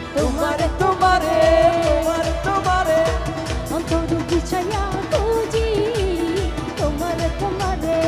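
A woman singing a Bengali song live into a microphone with a band, her melody gliding between held notes over a steady, fast drum beat.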